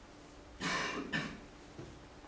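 A person coughs twice in quick succession, starting about half a second in, the second cough shorter than the first.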